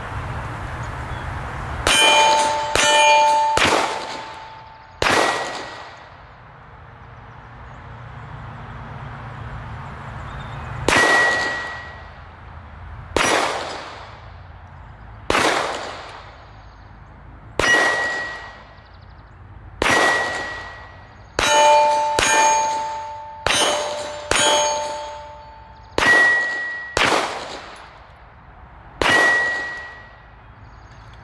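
Rock Island Armory 1911 pistol fired in a slow string of about sixteen single shots, most a couple of seconds apart with a quicker run near the middle. Nearly every shot is followed by the clang of a steel target ringing, some at a lower pitch and some at a higher one, as hits land on two different plates.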